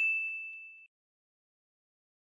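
A single bright ding sound effect, one struck tone that rings and fades away in under a second.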